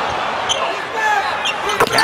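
Basketball being bounced on a hardwood court over a steady arena crowd murmur, with one sharp bounce about two seconds in.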